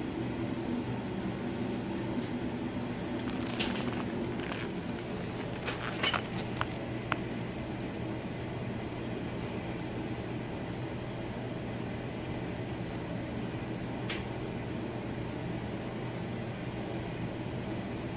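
Steady low hum of scanning-electron-microscope and cleanroom air-handling equipment, with a few sharp clicks over the first seven seconds and one more near the end as the loadlock is closed and control-panel buttons are pressed to pump it down.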